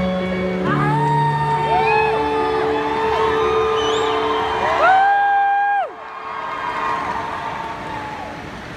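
Held keyboard chords in an arena, over a crowd of fans screaming and whooping. One loud, close scream starts about five seconds in and breaks off just before six seconds, and the crowd noise thins after that.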